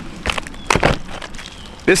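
Peeling bark being torn off a dead tree trunk by hand: several sharp cracks and snaps, the loudest just under a second in.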